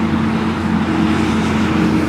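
Steady low hum of a motor vehicle engine, with a haze of road noise around it.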